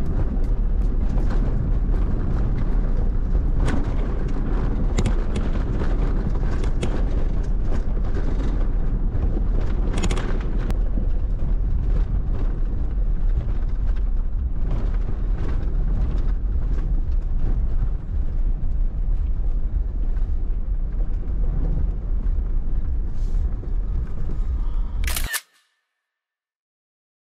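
Off-road vehicle driving over a gravel dirt trail, heard from a hood-mounted camera: a steady low rumble of wind and tyres with scattered knocks from gravel and bumps. Just before the end, a sharp camera-shutter click, then the sound cuts off.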